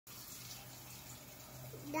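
Steady low hum with a faint even hiss, then a toddler's voice begins just before the end.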